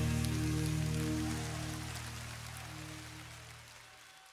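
The closing chord of a pop-rock song, held after the last hit and fading steadily away, with a high hiss dying out along with it.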